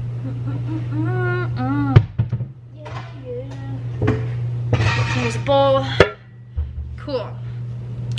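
Two sharp knocks, about two seconds in and again about six seconds in, as a stainless steel mixing bowl is fetched and handled at a granite kitchen counter, over a steady low hum.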